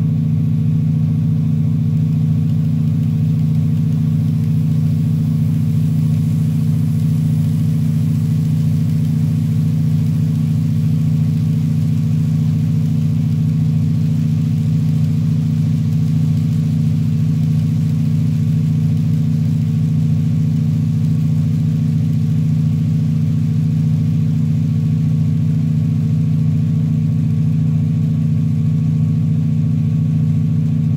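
SoundTraxx SurroundTraxx synthesized diesel locomotive engine sound, played through computer speakers with a subwoofer, running at a steady, unchanging note throughout.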